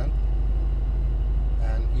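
Dodge Challenger Hellcat's supercharged 6.2-litre V8 idling with a steady low drone.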